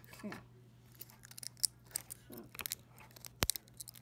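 Scattered sharp clicks and small knocks from handling a dismantled speaker driver and a hand tool on a wooden table, with one louder knock about three and a half seconds in, over a steady low hum.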